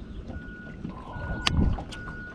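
Electric bow-mounted trolling motor whining in short on-off spurts as it is worked from the foot pedal, over low rumble of water against the hull. A click and a thump about one and a half seconds in.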